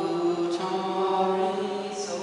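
Slow sung chant: voices hold long, steady notes that change pitch every half second or so, with soft hissing consonants between the notes.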